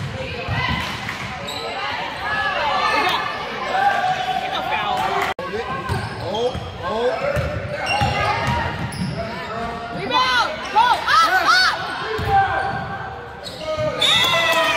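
Basketball game sounds on a hardwood gym court: sneakers squeaking in short, repeated chirps and a basketball bouncing, with indistinct voices calling out. The sound drops out briefly about five seconds in.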